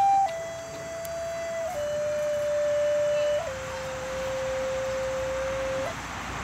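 Native American-style wooden flute playing a slow line of long held notes that step downward in pitch, each change marked by a quick flick of a grace note. The lowest note is held longest and stops just before the end.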